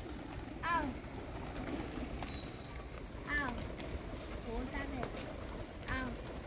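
A large flock of feral rock pigeons: low cooing that recurs every second or so, over the patter and flutter of many wings and feet on concrete.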